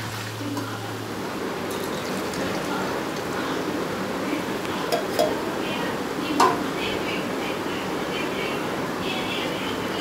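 Rice and sweet corn sizzling in oil in an aluminium pressure cooker on the stove, a steady hiss, with a couple of light metal clinks about halfway through.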